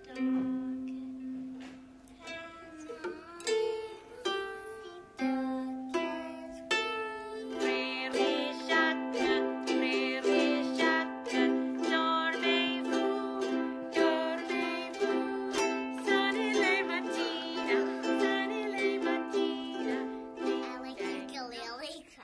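Ukulele music with singing. A steady note is held underneath, and wavering sung notes come in about eight seconds in and carry on over it.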